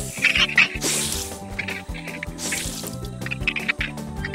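Cartoon background music with several short hissing sound effects from an animated spitting cobra spraying venom.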